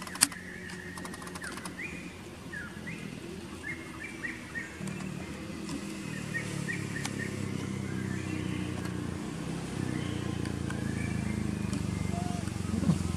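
Short high chirps, repeated many times through the first half and thinning later, typical of small birds, over a steady low hum that grows louder about halfway through; a single sharp click comes just after the start.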